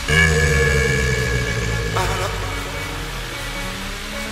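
Aleteo electronic dance music from a DJ mix. A held tone enters right at the start and fades after about two seconds, over a steady low bass that thins out in the last second.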